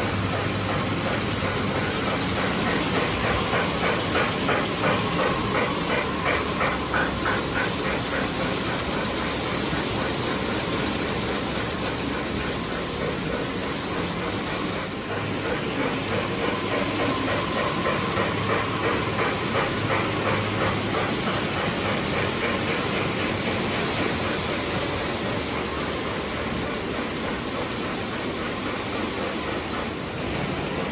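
O gauge model steam locomotive running on the layout, its sound system giving a steady rhythmic chuffing hiss over the hum of the wheels and motor on the three-rail track.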